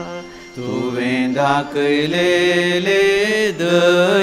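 A male voice singing a Konkani responsorial psalm in a slow, chant-like melody with long held notes. The singing resumes about half a second in after a short breath.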